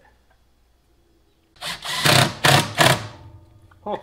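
Cordless drill driving a screw to fix a hinge onto the wooden rack, run in three quick surges over about a second and a half.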